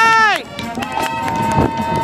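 Marching band brass holding a loud chord that falls off in pitch about half a second in, over sharp percussion clicks. A softer single held note and percussion taps follow.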